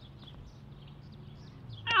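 Quiet outdoor background with a low steady hum. Near the end, a person's loud, drawn-out "Oh" falls in pitch as a mini golf ball stops just short of the hole, a near miss.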